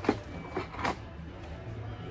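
Steady background hum of a large hardware store, with two short sharp clicks, one just after the start and another about a second in, as small packets of hardware are handled.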